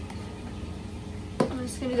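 A steady low hum, then a short click about a second and a half in, just before a woman starts speaking.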